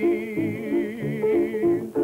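A man singing one long held note while accompanying himself on piano, which plays short chords in a steady rhythm about three a second. The voice cuts off just before the end. It is an early sound-film recording with little top end.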